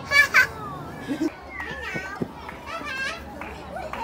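Children's voices and chatter in the background, with two short, loud shrieks near the start.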